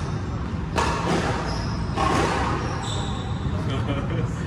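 Squash rally: two sharp smacks of the ball, about a second apart, echoing around the enclosed court, with short high squeaks of shoes on the wooden floor.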